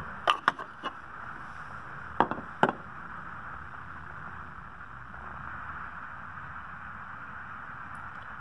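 Glass tint sample panels clicking and tapping as they are handled and set into the slot of a solar transmission meter: a few light clicks in the first second and two more a little after two seconds in, over a steady background hiss.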